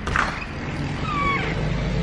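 A steady low rumble of background noise, with one short whistled call a little past a second in.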